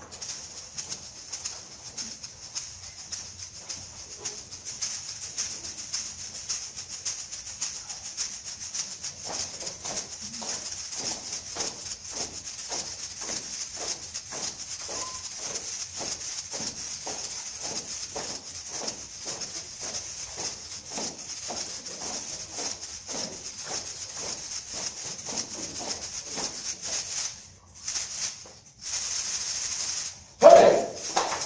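An ensemble of egg shakers played together in a tight rhythm, giving a dense, steady shaking sound. About ten seconds in, lower accents join on a regular pulse of about two a second. The shaking breaks off briefly near the end, then starts again.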